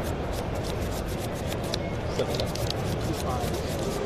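A deck of sleeved trading cards being shuffled and handled, a quick run of soft clicks and slaps throughout, over a steady background of crowd chatter.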